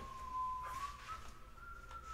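A faint, thin whistling tone that holds roughly one pitch, wavering a little and stepping slightly higher about a second in.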